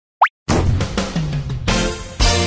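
A quick rising 'bloop' sound effect, then a short electronic logo jingle starts abruptly about half a second in, with a low line stepping downward and a fresh accent near the end.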